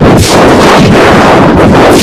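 Heavily distorted, clipped audio effect: a harsh wall of noise that bursts in suddenly out of silence and stays at full volume.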